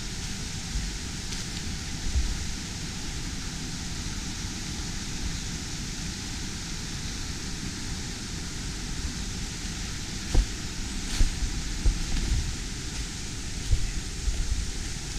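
Steady rushing of a small rocky brook and its cascade, an even hiss throughout. Several soft low thumps from about ten seconds in, like footsteps on leaf litter.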